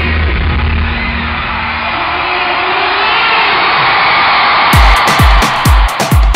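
Dance track played loud over an arena PA during a DJ breakdown: the deep bass line stops and the top end stays muffled while the crowd's cheering and whooping swells. Near the end the full mix drops back in with a heavy kick drum about twice a second.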